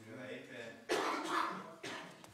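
A person coughing once, about a second in.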